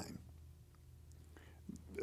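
A pause in a man's speech: low room hum, with a soft intake of breath near the end just before he speaks again.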